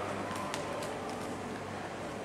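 Steady low background hum with a few faint clicks in the first second or so.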